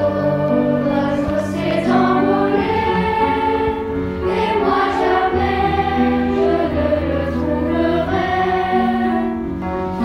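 A choir of young voices singing a slow song in French over orchestral accompaniment, with long held low notes underneath.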